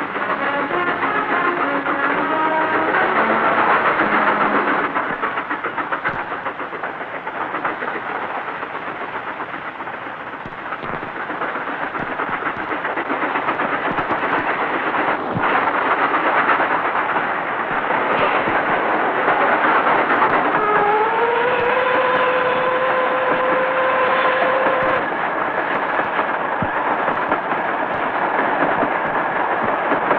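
Steam express locomotive running at speed, a steady loud rushing noise of the train on the rails. Later on its whistle sounds once for about four seconds, sliding up and then holding a single note.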